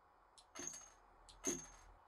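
Faint short clicks from a wrist-mounted coil-gun web shooter being fired, one about half a second in and another about a second and a half in, each with a brief high whine. The balloon it is aimed at stays unburst.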